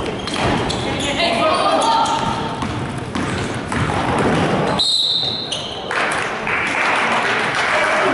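Basketball dribbling and crowd voices in a gym during a game. About five seconds in, a referee's whistle blows once, briefly, and the crowd breaks into cheering and applause.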